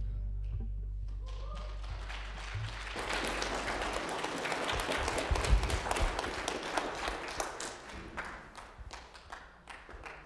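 The final chord of a live worship song fades out. About three seconds in, a congregation applauds for several seconds, then the clapping dies away near the end.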